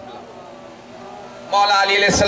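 A man's voice through a public-address loudspeaker: a lull with only faint background hum, then about one and a half seconds in he breaks loudly into a long-held, sung recitation.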